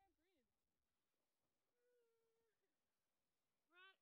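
Very faint voices calling out from a distance: short gliding calls at first, one long held call about two seconds in, and a louder rising call near the end.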